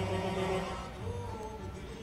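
Background music with held melodic notes whose pitch changes about halfway through.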